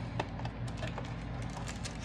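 Foil Pokémon card booster packs crinkling and rustling as they are handled: a scatter of short crackles and clicks over a steady low hum.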